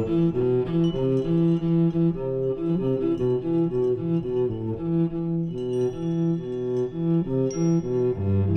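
Cello playing a quick, repeating pattern of bowed notes. A few high metallic pings from the percussion ring over it in the second half.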